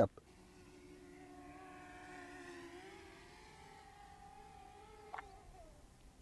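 DJI Mini 2 drone's propellers whining faintly at full power in sport mode. The pitch rises a little about three seconds in and then eases slightly. A short click comes near the end.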